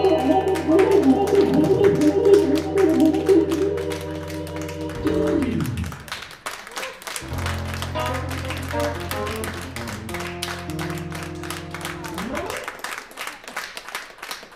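Live keyboard and synthesizer music: sustained chords over a low drone with a moving line on top, thinning with a downward pitch slide about five seconds in. A final, quieter held chord follows and stops a little after twelve seconds with an upward slide.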